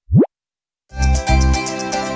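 A short synthesized 'bloop' sound effect: one quick upward-sweeping pitch, about a quarter second long. Just under a second later, upbeat background music with a steady bass beat begins.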